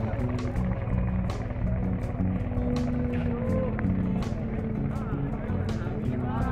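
Background music: a song with a steady drum beat, a melodic line and a singing voice.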